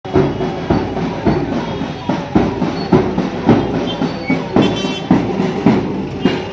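A steady drumbeat at a little under two beats a second, each beat a sharp full strike, with a brief bright crash near the end.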